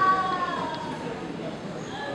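A long, high wailing cry that falls slightly in pitch and fades out about half a second in, followed by faint murmuring.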